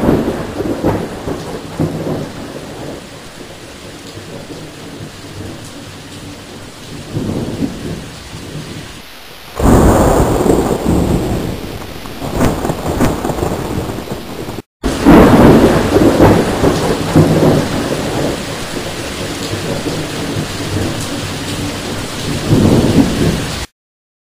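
Thunder rumbling over steady rain. There are three loud peals, one at the start, one about ten seconds in and one about fifteen seconds in, each dying away slowly. A brief break in the sound comes just before the third.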